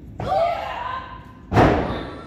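A wrestler's drawn-out shout as she hoists her opponent, then a loud slam about one and a half seconds in as the opponent's body is driven down onto the wrestling ring's canvas, with a short smear of echo in the hall.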